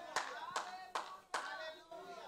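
Hands clapping in a steady rhythm, about two to three claps a second, with faint voices behind.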